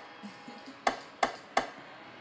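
Drill counter snare sample in FL Studio sounding as short, sharp hits: three in quick succession about a third of a second apart, in the second half.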